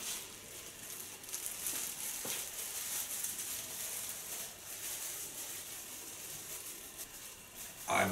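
Thin clear plastic foil rustling faintly as it is pulled over and closed around a head of hair, with a few short crinkles.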